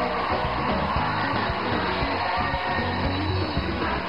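Live gospel worship music with a steady beat and sung melody, as a congregation sings praise songs.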